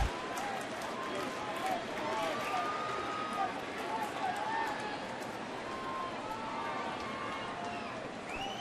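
Ballpark crowd noise: a steady hum from the stands with scattered voices of fans calling out.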